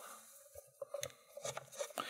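A few faint, scattered clicks and scrapes of a screwdriver turning a small screw in a metal lock housing.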